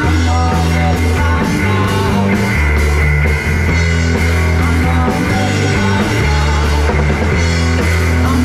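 A live rock band playing: electric and acoustic guitars over a drum kit, with deep held bass notes that change every second or so and a steady pattern of cymbal strokes.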